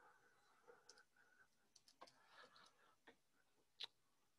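A few faint computer keyboard key clicks, scattered through otherwise near silence, with the sharpest click near the end.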